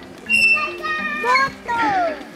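Young children's high-pitched voices calling and shouting, their pitch sliding up and down, starting about a third of a second in.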